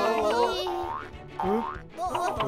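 Cartoon sound effects for a spinning robot machine that wobbles out of control: music fades out early, then come two separate upward-sweeping pitch glides.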